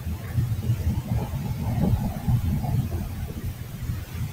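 Low, uneven rumbling background noise, like vehicle or road noise picked up by an open call microphone, with faint muffled sounds over it.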